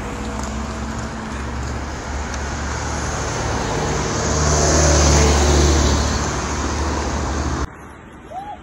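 Road traffic: a car passing by on the road alongside, swelling to a peak about five seconds in and then fading, over a steady low rumble. The sound cuts off suddenly near the end.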